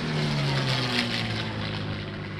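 P-51 Mustang's V-12 piston engine and propeller in a low fly-by. The engine note drops in pitch as the fighter passes, then holds steady.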